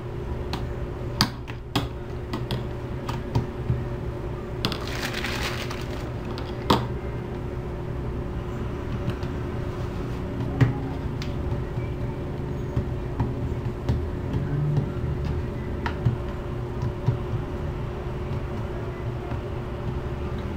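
Dough and a rolling pin being handled on a plastic cutting board: scattered light knocks and taps, and a brief scraping hiss about five seconds in, over a steady low hum.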